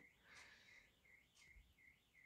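Near silence, with a faint bird chirping a quick repeated high note, about three a second.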